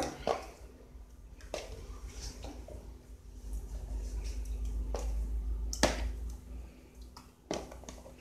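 Peeled cassava chunks dropped by hand into water in an aluminium pressure cooker, giving a few separate sharp plops and knocks against the pot.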